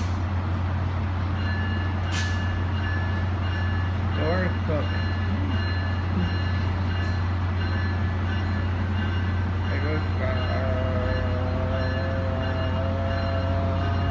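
Tri-Rail diesel commuter train running at the platform with a steady low engine drone and a faint, evenly repeating high beep. About ten seconds in, a pair of whining tones rises in as the train begins to pull away.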